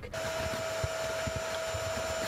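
A small electric motor running steadily: an even hum with one constant mid-pitched whine.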